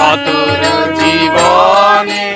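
Hand-pumped harmonium playing sustained reed notes while a woman sings a Bengali devotional kirtan, her voice sliding upward on a held note in the second half.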